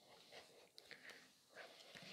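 Near silence: room tone with a few faint taps from hands handling the adapter and its packaging.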